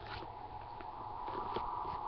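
Faint scattered clicks and knocks of someone moving about close to the microphone, over a steady faint hum.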